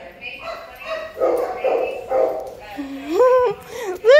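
A dog whining and yipping in excitement, with a longer rising whine near the end.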